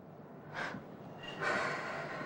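A woman's audible breathing during a pause in speech: a short sharp intake of breath about half a second in, then a longer breath out about a second and a half in.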